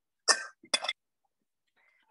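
A person coughing twice in quick succession, two short coughs about half a second apart.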